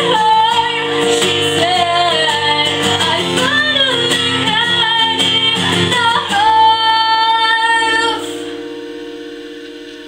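Solo voice singing over a strummed acoustic guitar. A long held note ends about eight seconds in, and the final guitar chord rings on and fades.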